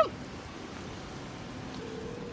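Steady outdoor background noise, an even hiss over wet pavement, with a faint low hum coming in near the end.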